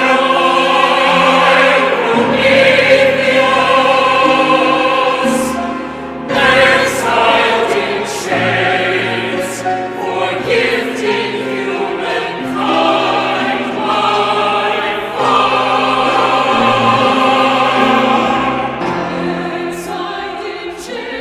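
A mixed SATB choir singing sustained chords in a contemporary choral piece. The sound eases off briefly about six seconds in, then the voices enter again.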